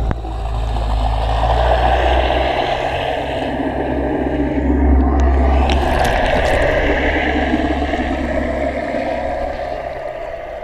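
Muffled underwater rumble and rush of water picked up by a GoPro in its waterproof housing, submerged with bubbles streaming past just after a high dive's plunge. A few faint clicks come about six seconds in.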